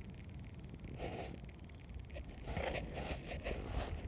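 Wind rumbling on a phone's microphone while the phone is swung around, with rustling handling noise that picks up in the second half. A fast, faint ticking from the phone's case runs underneath.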